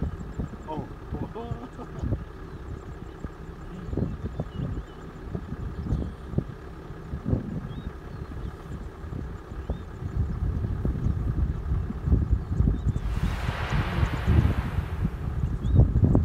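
Low rumble of an idling vehicle engine with wind buffeting the microphone and low, indistinct voices; the rumble grows heavier later on, and a rushing hiss swells and fades near the end.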